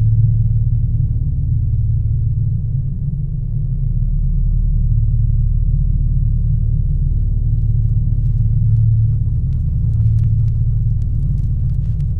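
A loud, deep, steady rumbling drone from the soundtrack, with faint scattered crackling clicks joining in from about seven seconds in.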